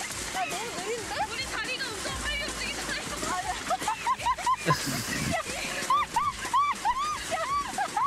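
Young women talking excitedly in Korean while riding a pedal rail bike, over the steady rattle of its wheels on the track and light background music. In the last couple of seconds comes a run of high-pitched laughter.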